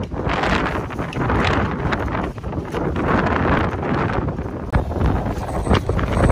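Strong wind buffeting the microphone, a gusty low rumble and rush that swells and eases several times.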